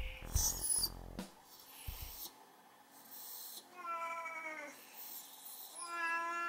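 A cat meowing twice in long, drawn-out calls, the first about four seconds in and the second at the very end. Music fades out in the first second.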